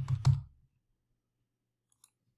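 Computer keyboard keystrokes: a quick burst of three or four key clicks in the first half second, as entries are typed into a web form.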